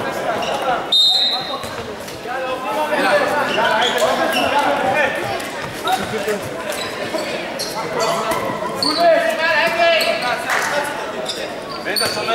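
A handball bouncing on a wooden sports-hall floor, several separate bounces ringing in the large hall, with a short high tone about a second in.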